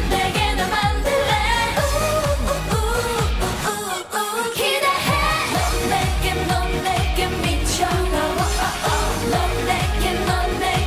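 K-pop dance song sung by a female group over a steady electronic beat. The bass and beat drop out for about a second near the middle, then come back in.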